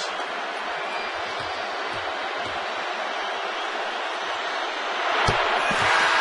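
Large arena crowd, a steady din of voices, with a single knock about five seconds in and the crowd then swelling into a cheer near the end, as the free throw is made.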